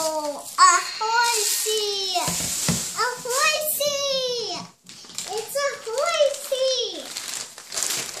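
A toddler's voice making drawn-out, wordless excited sounds, several long sliding vowels with short breaks between them.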